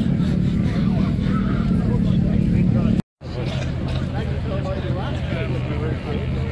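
Motorcycle engine idling steadily under crowd chatter, with a brief dropout about halfway through where the audio cuts, after which a lower, steady engine hum carries on under voices.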